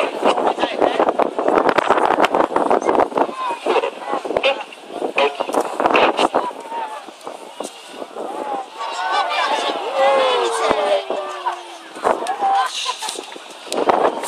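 Strong wind buffeting the microphone, with people's voices. About ten seconds in, a slowly falling whine as the Red Arrows' BAE Hawk jets run in low.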